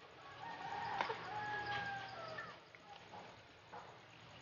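A rooster crowing once in the background, a long call of about two seconds that starts about half a second in and drops in pitch at the end. A few light clicks of forks on plates sound around it.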